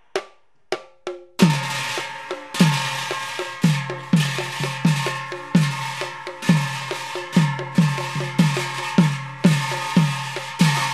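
Nagara drums beaten in a steady rhythm of about two strokes a second, each low stroke dropping in pitch, under continuous ringing of brass hand cymbals. A few sparse taps come first, and the full beat starts about a second and a half in.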